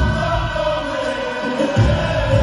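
A choir of voices singing a Cook Islands Māori action song in harmony, holding a long chord. Low rhythmic beats accompany it at the start, drop out, and come back near the end.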